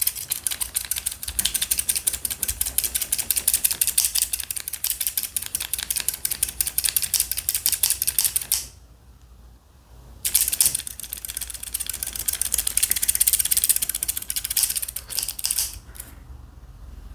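Blue plastic-handled scissors opened and closed very fast on nothing, the steel blades snipping together in a rapid run of crisp metallic clicks. The clicking stops for about a second and a half just past the middle, then starts again and stops shortly before the end.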